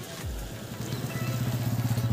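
A motor vehicle's engine running with a steady low hum, coming in about a second in and growing louder.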